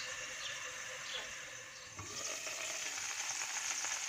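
Asparagus sizzling gently in olive oil and a splash of water in a covered aluminium frying pan, softening in the steam. A light knock about halfway through, as the lid is lifted, after which the sizzle is a little louder.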